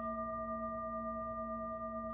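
Frosted quartz crystal singing bowls ringing on after being struck, several pure steady tones sounding together and holding without fading.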